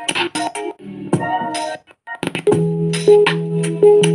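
Music playing through a Zebronics Zeb-Action portable Bluetooth speaker. It drops out for a moment just before two seconds in, then resumes with a steady low note under repeated higher notes.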